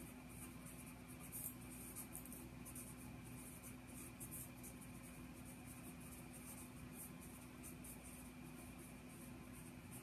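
Faint, irregular scratching of a pen writing by hand on paper, stroke after stroke, over a steady low hum.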